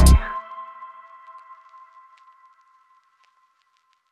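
Hip-hop background music ending: the beat stops a fraction of a second in, and a lingering ringing tone fades out over about two seconds.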